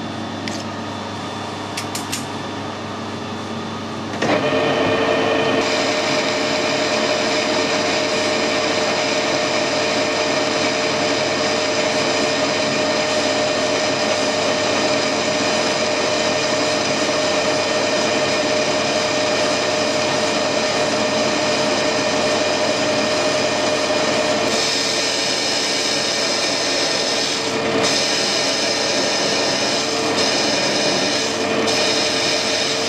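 Metal lathe turning down a steel shaft: the spindle runs steadily, and about four seconds in the tool starts cutting, bringing a louder, steady whine with cutting noise. The tone of the cut shifts about 25 seconds in.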